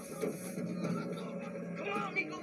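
Movie soundtrack playing from a TV: background music with voices and a brief burst of noisy action sound near the start.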